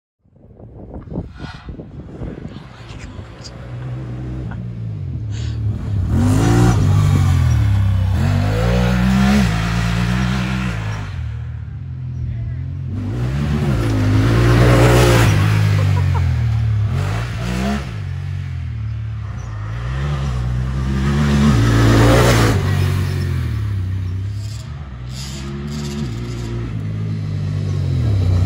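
Honda Talon 1000R side-by-side's parallel-twin engine driving hard on dirt trails. The engine note climbs and drops over and over as the throttle is worked and it shifts, growing louder each time the machine comes close.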